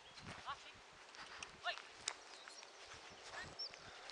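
Faint outdoor background with a few short, distant voice sounds and some light knocks.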